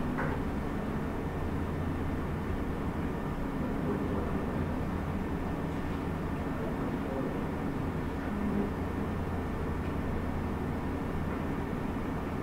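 Steady room noise of a meeting room: a constant low hum under an even hiss, with a faint click at the very start.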